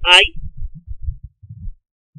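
A short spoken word, then a run of soft, low, irregular thumps.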